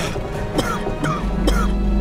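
A man coughing several short times, the hacking of someone who has breathed in smoke, over background music.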